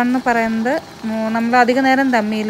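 A woman's voice talking, with long drawn-out vowels and a short pause just before the middle.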